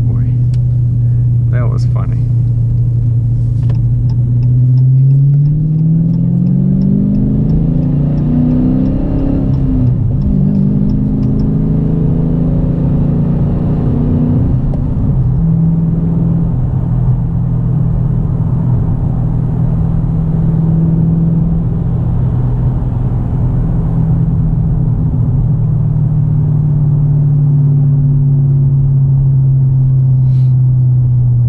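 Car engine heard from inside the cabin, its note rising twice as the car accelerates up to speed, then settling from about fifteen seconds in to a steady cruising drone with road noise. A light, regular ticking runs through the first part and stops about eleven seconds in.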